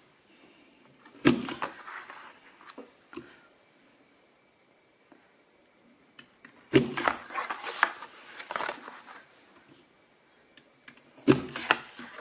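Hand-held metal hole punch clacking as it punches through kraft card, three times: once about a second in, again around the middle with a few smaller clicks, and once near the end, with faint rustling of card between.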